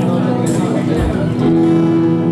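Live band music: guitar strumming over sustained chords, with sharp percussion hits about half a second and a second in, and a new chord held from about one and a half seconds, in the closing bars of a song.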